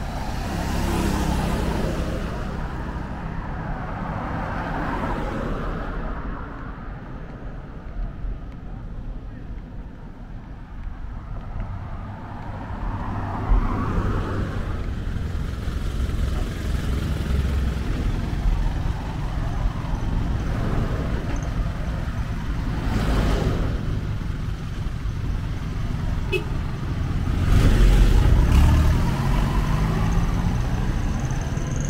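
Road traffic passing close on a bridge: cars, a motorcycle and a small dump truck go by one after another, each swelling and fading over a steady low rumble. The loudest pass comes near the end, as the truck draws alongside.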